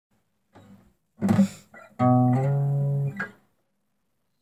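Acoustic guitar played in short bits: a sharp strum about a second in, then a held note that shifts slightly in pitch and is cut off about a second later, followed by one brief pluck.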